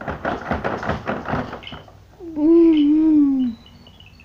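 Rapid plastic tapping and rattling from a baby's activity-jumper tray and toys. About two seconds in, a single drawn-out wavering vocal sound lasts about a second and falls in pitch at the end. It is the loudest thing heard.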